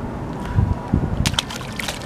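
Small opaleye dropped back into the sea, hitting the water with a brief splash a little over a second in, followed by a short slosh.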